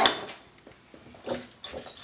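A single sharp clink of kitchenware at the start, dying away quickly, then a few faint clicks and scrapes from a utensil in a glass mixing bowl as muesli is mixed.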